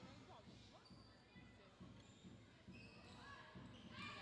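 Faint basketball bounces on a hardwood court as the free-throw shooter dribbles, heard under near silence in a gym, with faint distant voices.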